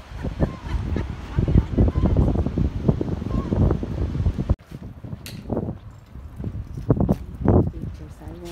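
Outdoor handheld phone recording: wind buffeting the microphone with indistinct voices of people around, then an abrupt drop in level about halfway through, followed by a few scattered thumps.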